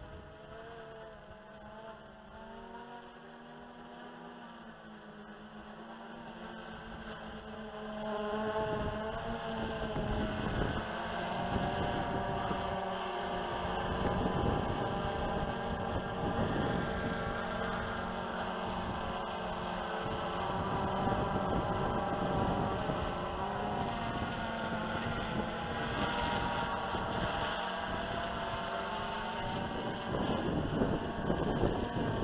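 Quadcopter's motors and propellers buzzing in flight, the pitch rising and falling with throttle and growing louder about eight seconds in as the drone comes closer.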